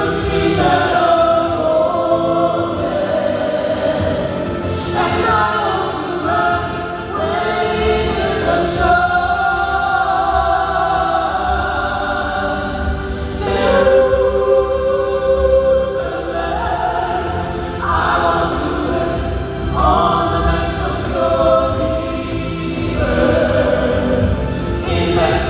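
A small gospel vocal group, men's and women's voices, singing in harmony through microphones and a PA system.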